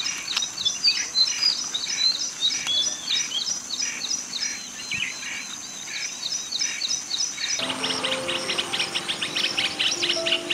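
White-browed bulbul calling: a quick, regular run of short, high chirps, about five a second, over a steady high whine. About three-quarters of the way through, the sound cuts to denser, faster chirping with background music underneath.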